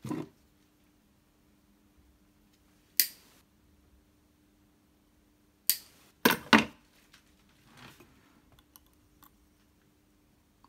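A few sharp snips and clicks from small hand tools, likely side cutters trimming a capacitor lead shorter: one about three seconds in, then three in quick succession around six seconds.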